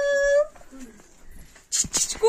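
A single high-pitched vocal call that rises and then holds one steady pitch, cutting off about half a second in. A faint short low sound follows.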